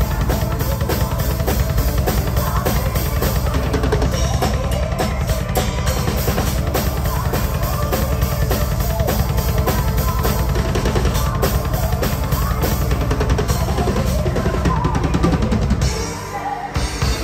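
Symphonic metal band playing live, driven by fast, steady double bass drumming on a Tama drum kit under keyboards and bass guitar.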